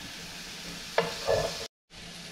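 Chopped onion, garlic and jalapeño sizzling in olive oil in a frying pan and being stirred with a wooden spatula, with a sharp knock about a second in. The sound cuts out for a moment near the end.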